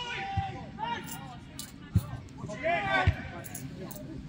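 Shouting voices on a football pitch: short calls from several people, with three brief dull thuds, about half a second in, at two seconds and about three seconds in.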